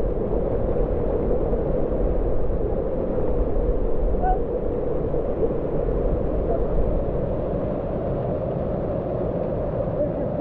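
Steady rushing of a shallow, fast-flowing rocky river.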